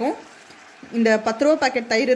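Speech: a voice talking in Tamil, broken by a short quiet pause near the start.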